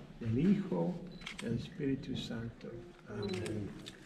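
Quiet, indistinct speech with a few faint clicks.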